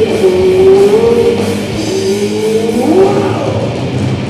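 Rock band playing live: distorted electric guitars, bass and drum kit in an instrumental passage, with a held lead guitar note that bends and slides up in pitch about three seconds in.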